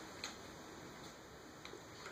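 A few faint, scattered clicks as a corgi puppy mouths a red rubber toy and a purple ball held together in its jaws, over quiet room tone.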